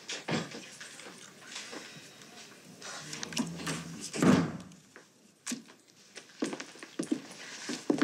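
An interior door opening and closing as someone comes into the room, with scattered soft knocks and clicks. The loudest is a dull thud about four seconds in.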